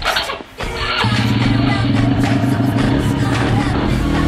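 Pop music playing, with a small youth ATV engine running under it; about a second in, a steady low drone sets in and becomes the loudest sound.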